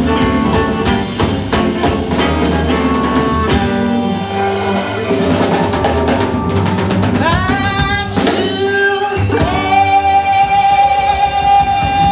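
Live blues band playing: drums, bass and guitar keep a steady beat for the first few seconds, then the beat drops away and the closing seconds are held on one long sustained note.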